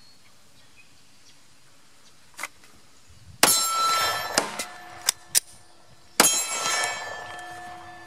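Two Glock 48 pistol shots about three seconds apart, each followed by a metallic ringing that dies away over a couple of seconds, with a few light clicks between them.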